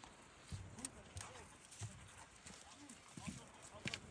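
Faint voices over a quiet background, with a few soft knocks.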